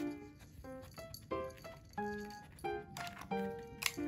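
Light comic background music: short plucked notes in a bouncy, halting rhythm.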